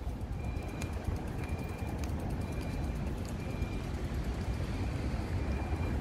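Steady low outdoor rumble of town-square background noise, growing slightly louder, with a faint thin high tone that comes and goes.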